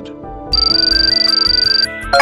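A high electronic trilling tone like a phone ringtone, starting about half a second in and stopping just before the end, over background music with a stepping melody.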